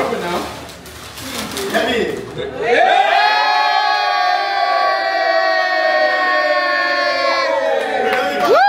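Party guests reacting to a gift being unwrapped, with mixed voices at first; about three seconds in, one person's voice holds a single long, high-pitched note for about four and a half seconds.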